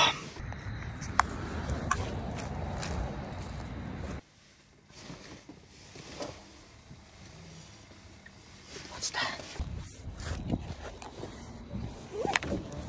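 A car's engine idling, heard from inside the cabin as a steady low rumble that cuts off abruptly about four seconds in. After that the cabin is quiet, with a few faint clicks and rustles.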